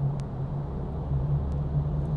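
Car cabin noise while driving: a steady low engine hum with road rumble beneath it, the rumble growing a little stronger about half a second in.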